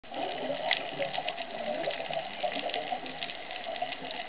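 Whale calls heard underwater: low, wavering moans with higher tones above them, over a steady crackle of short clicks.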